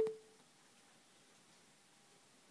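The last note of a Bluetooth speaker's electronic chime fades out in the first moment, then only faint room tone remains.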